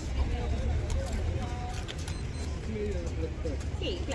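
Outdoor street ambience: a steady low rumble of traffic, with faint voices of people in the background.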